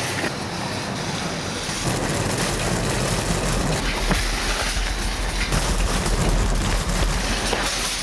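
Shopping trolley rolling over asphalt: a steady rattling rumble of its wheels and wire basket, with a deeper rumble building from about two seconds in.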